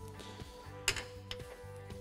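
Soft background music, with a sharp plastic click about a second in as a turn-signal bulb socket is pulled out of the headlight housing.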